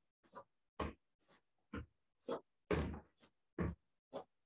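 A karateka drilling alternating roundhouse and front kicks makes a quick run of short, sharp bursts of breath and movement, about two a second. The longest and loudest comes a little before three seconds in.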